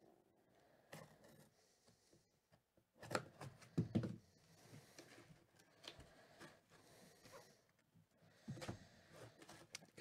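Quiet cutting and handling as a cardboard trading-card box is opened: a blade slicing the seal, and paper and cardboard rustling and scraping, with scattered faint clicks and a louder stretch of rustling about three to four seconds in.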